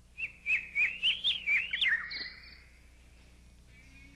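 A bird singing: a quick run of about seven sharp chirps over roughly two seconds, each a little higher than the last, ending on a short higher note, over a faint steady low hum.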